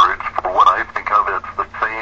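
Speech only: a person talking continuously on a radio talk show, in band-limited broadcast audio.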